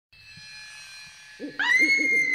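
Spooky opening sound design: faint eerie held tones, then about one and a half seconds in an owl hooting as a loud high sustained tone comes in.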